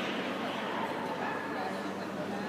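A dog barking and yipping over the steady murmur of many voices in a large hall.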